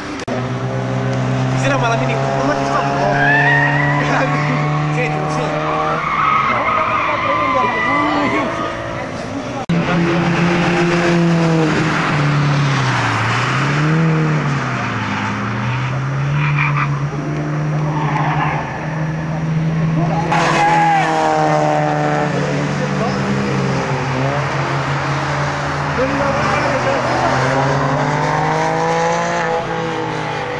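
Several cars' petrol engines revving hard and changing gear as they lap a race track, the engine note rising and dropping again and again as each car passes.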